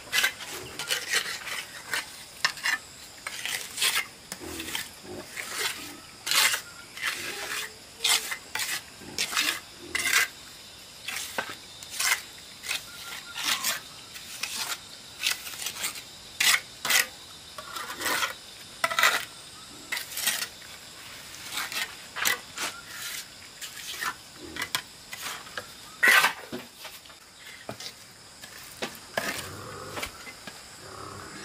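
Steel bricklaying trowel scraping and tapping wet cement mortar onto concrete blocks: an irregular run of short, sharp strokes, sometimes several a second.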